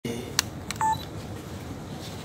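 Two sharp clicks followed by a short electronic beep about a second in, over low room noise.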